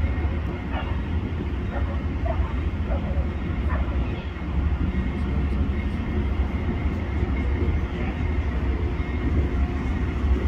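Amtrak diesel locomotive running as it approaches slowly along the track, a steady low rumble with faint voices in the background.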